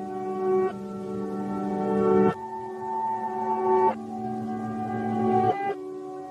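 A song played backwards: sustained chords swell up and then cut off sharply four times, about every second and a half, as each note's fade is heard in reverse.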